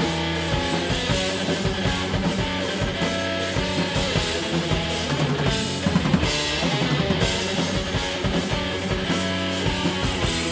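Live heavy metal band playing an instrumental passage: distorted electric guitar, bass guitar and a drum kit keeping a steady, driving beat.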